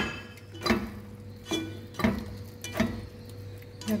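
Cookware clinking and knocking, about six sharp strokes spread unevenly, the first ringing briefly: a glass pot lid and a spatula against a granite-coated pot of simmering teriyaki. A faint steady hum runs underneath.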